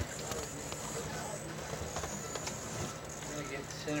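Indistinct voices in a room over a steady low hum, with a few light clicks.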